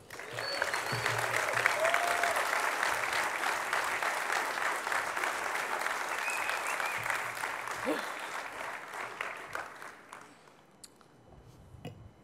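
Audience applause, starting right after a speech ends, holding steady for several seconds and then dying away about ten seconds in.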